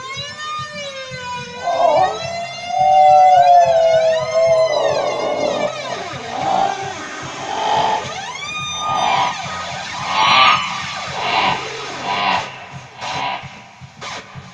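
Theremin playing wavering, gliding notes that rise and fall like a siren, loudest in a long held note a couple of seconds in, then breaking into shorter swooping phrases.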